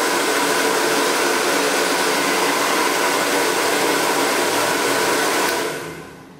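Chaoba 2000 W hair dryer running on fan speed one with the heat on the lowest setting: a steady rush of air with a faint motor whine. It is switched off near the end and winds down.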